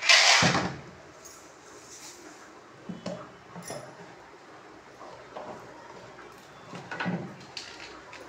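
A short, loud scraping rustle right at the start, then a quiet stretch broken by a few faint clicks and knocks of household objects being handled.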